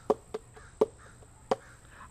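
Four short, sharp clicks at irregular intervals over two seconds; the first is the loudest.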